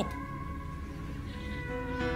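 Soft church keyboard chords: a few long, steady notes held without a moving melody, with a new low note coming in near the end.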